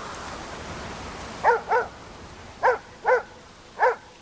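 A dog barks five times, in two quick pairs and then once more, each bark short and pitched. A soft rushing hiss fills the first second and a half.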